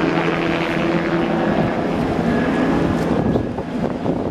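Low-flying aircraft passing overhead: a loud, steady engine drone that dies away near the end.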